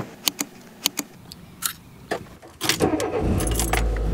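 Keys jangling and a run of sharp clicks from a car door and handle, then about three seconds in the car's engine starts and runs with a steady low hum.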